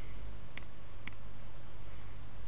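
Two sharp computer mouse clicks about half a second apart, over a steady low hum.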